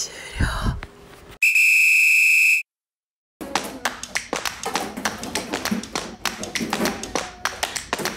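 A single steady, high electronic beep lasting about a second, cut off into a moment of dead silence, followed by a rapid run of sharp clicks and knocks.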